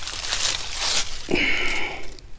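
Dry fallen leaves rustling and crunching underfoot and under hand as a shed deer antler is picked up off the leaf litter, with a short pitched sound in the second half.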